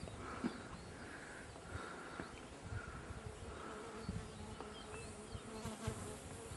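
Insects buzzing steadily, with a soft chirp repeating about every three-quarters of a second.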